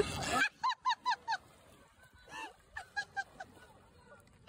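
Geese honking: a quick run of four or five short honks, then a few more scattered ones.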